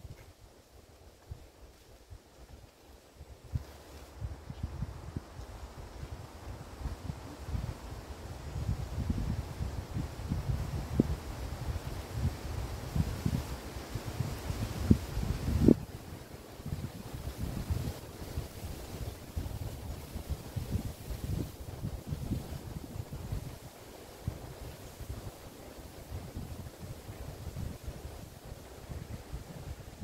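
Wind gusting on the microphone: low, uneven buffeting that picks up a few seconds in and rises and falls in gusts.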